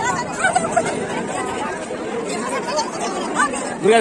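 Crowd chatter: many people talking at once, with nearer voices rising over the babble.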